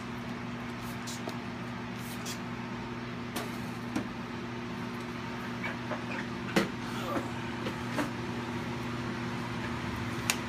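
Steady hum of a biosafety cabinet's blower fan, with a low electrical tone. A few light knocks and clicks come in the second half as bottles are handled on its steel work surface.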